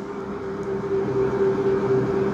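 A steady droning hum with one steady mid-pitched tone, the sound of machinery running in the room.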